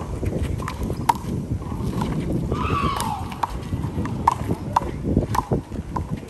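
One-wall handball rally: a small rubber ball slapped by hand and bouncing off a concrete wall and ground, sharp ringing pops about once a second. Sneakers scuff on concrete, and a falling squeal comes about midway.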